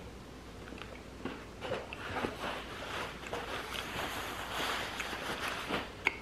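A man chewing a mouthful of soft cookie with cream cheese frosting: irregular soft, wet mouth clicks and smacks starting about a second in, with a slightly louder smack near the end.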